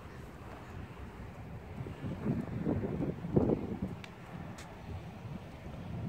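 Wind rumbling on the microphone, with some rustling in the middle and two faint ticks near the end.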